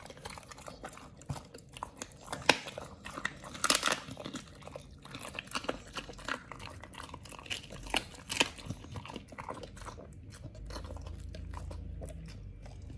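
A pit bull chewing a raw chicken foot, the bones crunching in irregular bites that thin out near the end.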